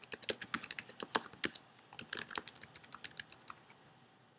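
Typing on a computer keyboard: a quick, uneven run of key presses that thins out and stops about three and a half seconds in.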